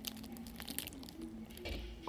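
Faint crinkling and clicking of a plastic biscuit wrapper handled in the hand, with a child's soft hummed 'mmm' under it in the first half.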